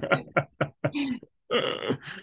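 A man and a woman laughing in short, broken bursts.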